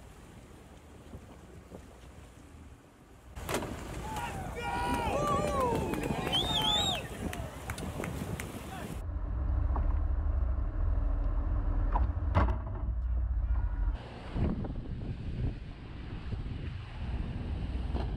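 Wind buffeting the microphone over open water, with several people shouting excitedly for a few seconds in the first half. A heavy low rumble then runs for about five seconds and cuts off abruptly.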